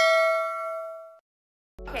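A bell-like ding sound effect for a subscribe-button animation's notification bell: one chime that rings and fades, then cuts off abruptly a little over a second in.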